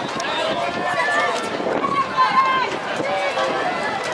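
Several overlapping voices calling out across an open-air youth football pitch during play, none of the words clear.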